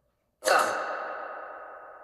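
A single sudden ringing hit about half a second in, fading away slowly over the next two seconds, with several steady tones lingering in its tail.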